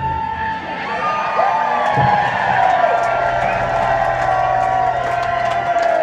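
Live rock band in a break between sections: the drums and bass drop out while a held, wavering electric guitar tone rings on, over a crowd cheering and whooping.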